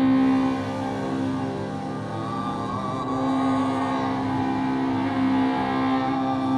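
Live ambient drone music: sustained electronic pad tones with a baritone saxophone playing long, low, wavering notes over them. The strongest held low tone drops out about half a second in and returns around three seconds.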